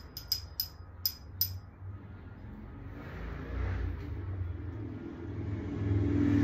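Metal bassinet frame tubes being handled, giving a few sharp clicks in the first second and a half. Then a low, steady rumble builds in level toward the end.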